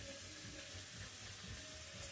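Faint, steady hiss with a faint steady tone underneath, and no distinct events.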